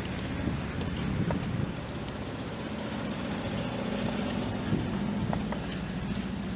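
The 427 cubic-inch V8 gas engine of a 1973 Chevrolet C65 truck, running steadily.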